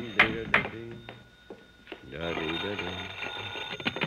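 A telephone bell ringing, played as a radio sound effect under voices, with a couple of sharp knocks about a quarter and half a second in.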